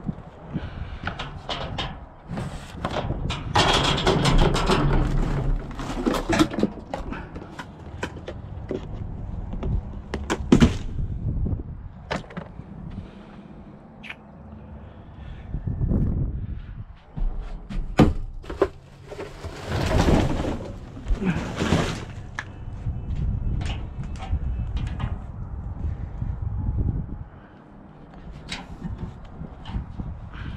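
Scattered knocks, thuds and clatter as a commercial dumpster's plastic lid is lifted open and the bags and boxes inside are handled, with several louder noisy stretches in between.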